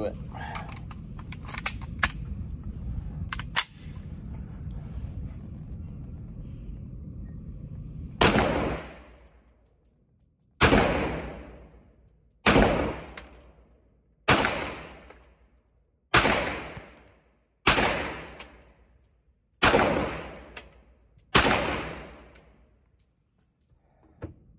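Eight shots from a Manurhin-made Walther P1 9mm pistol, fired singly about two seconds apart and starting about eight seconds in, each one trailing off in a long echo in an indoor range booth.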